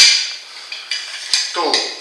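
A steel shield plate clanking against a steel crankshaft half as it is fitted on: one sharp metal knock with a short ring at the start, then a light click about a second and a half in.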